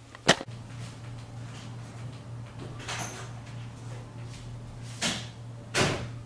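A sharp knock shortly after the start, then a steady low hum with a few soft thuds and rustles, one about halfway and two near the end.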